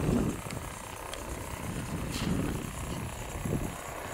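Outdoor ambience: a low rumble that swells and eases, with a few faint ticks.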